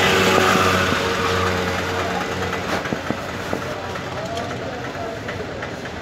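Street traffic noise with a motor vehicle engine running steadily for about the first two seconds, then dropping away, leaving a general din with scattered small clicks.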